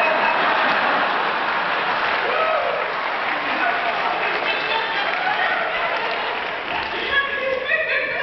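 Audience in a large hall applauding, with scattered voices mixed in; it dies down about seven seconds in.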